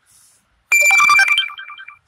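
Electronic phone alert tone: a short run of quick beeping notes over a held high note, starting about two-thirds of a second in, loud, then dying away near the end.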